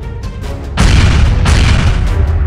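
Background music with a loud crash-and-boom sound effect about a second in. The effect hits twice in quick succession and lasts about a second.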